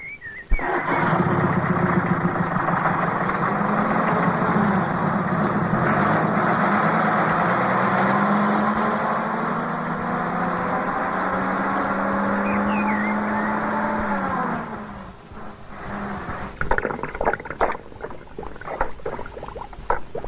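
A motor vehicle's engine running steadily for about fourteen seconds, its pitch sagging slightly before it fades away. Quieter scattered knocks follow near the end.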